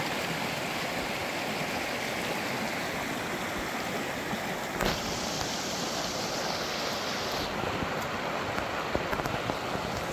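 Shallow rocky creek rushing over stones in riffles: a steady rush of water. A short knock comes about halfway through, and a few faint clicks near the end.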